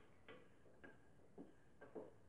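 Wooden rolling pin rolling a thin sheet of dough on a stone countertop: faint, short knocks about twice a second as it is pushed back and forth.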